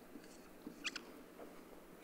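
Marker pen drawn across a whiteboard surface, writing a word: a few faint short squeaks and scratches, the clearest just before a second in.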